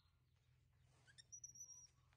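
Near silence, with a faint, thin, high-pitched chirp held for just under a second, starting about a second in.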